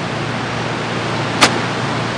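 A golf club striking the ball on a short chip shot from greenside rough: one sharp click about one and a half seconds in, over a steady hiss of outdoor ambience.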